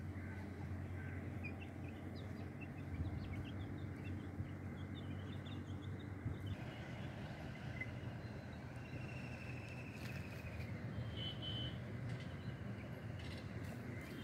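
Young chickens peeping faintly, with short high chirps through the first half, over a steady low hum. A short trilled call comes about nine seconds in.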